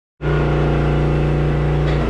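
An engine running steadily at constant speed, a loud unchanging drone.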